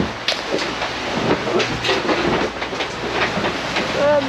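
Wind rushing over a handheld action camera's microphone, with irregular knocks and clicks as the camera is handled and turned, over a low steady hum.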